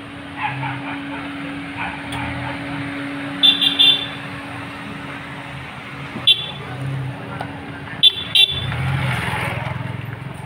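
Slow street traffic: cars running by, with short sharp high toots in quick groups (three together, one, then two). A car's engine comes closer and louder near the end.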